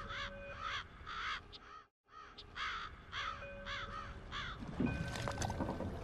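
Seagulls crying in a run of short, repeated arching calls over a couple of steady held tones. About two seconds in the sound cuts out briefly, and then the same stretch plays back reversed, a glitch edit.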